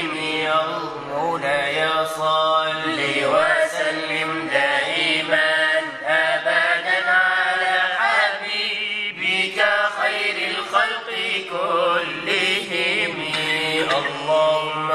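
Unaccompanied Arabic nasheed in praise of the Prophet Muhammad: a voice chanting long, ornamented melismatic phrases over a steady low held drone.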